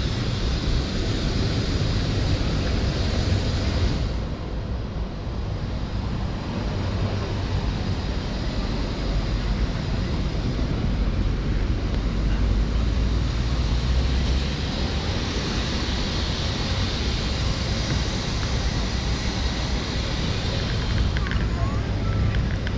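Steady city street noise: a low rumble of traffic and wind on the microphone, with no distinct events.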